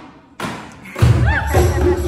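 Kirtan band starting up: two sharp thumps, then about a second in the full band with bass and hand percussion comes in loud.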